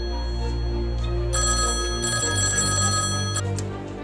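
A telephone ringing once for about two seconds, a steady multi-tone ring that stops abruptly with a click, over background music with a low sustained drone.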